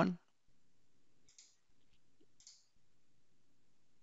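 Two faint computer mouse clicks, a little over a second apart, over near silence.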